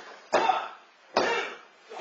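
Referee's pin count on a wrestling ring: two sharp slaps on the mat, about a second apart, each dying away quickly.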